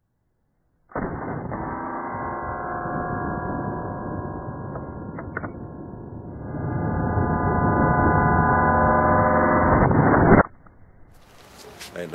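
A chord of steady, horn-like tones from an edited-in sound track, muffled and dull in tone, that starts suddenly, swells louder about halfway through and cuts off abruptly.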